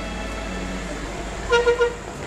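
A horn tooting three times in quick succession near the end, over a low steady rumble.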